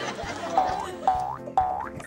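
Cartoon 'boing' sound effect played three times, about half a second apart, each a springy tone rising in pitch, over background music with a steady low beat.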